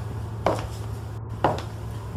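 Sharp single knocks at a slow, even pace, about one a second, over a steady low hum: an intro sound-design bed.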